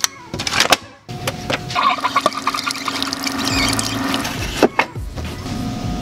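Single-serve pod coffee maker brewing a cup. Clicks come at the start as the pod lid is shut, then a steady whirring hum with liquid running into the mug, ending about four and a half seconds in, and a sharp click shortly after.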